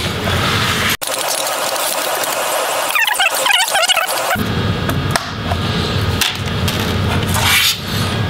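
Plastic snap clips of a laptop's front display bezel creaking and popping loose as the bezel, with the screen and digitizer built into it, is pried away from the back cover.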